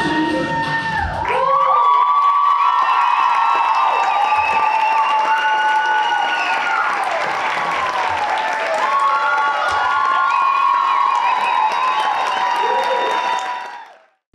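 Music cuts off about a second in, and the audience applauds and cheers with many high children's shouts and whoops, dying away just before the end.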